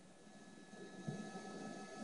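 Faint background noise from a television broadcast, with a faint steady high-pitched tone that sets in just after the start.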